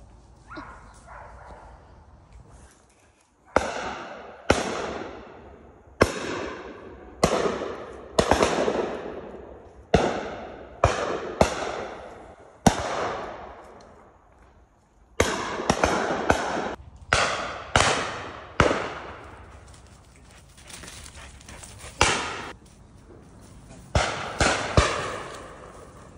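Shotguns firing on a pheasant drive: about twenty shots, some spaced out and some in quick pairs, each followed by a long rolling echo.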